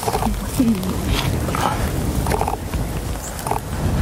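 Low rumble of wind buffeting the microphone, with faint, brief voices in the background.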